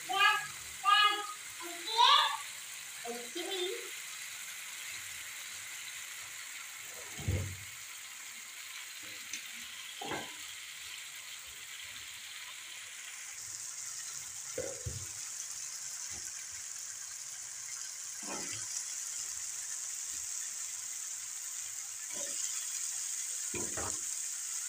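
Onion-tomato masala sizzling in oil in an aluminium karahi: a steady hiss that turns brighter about halfway through. A wooden spoon stirs and scrapes it a handful of times.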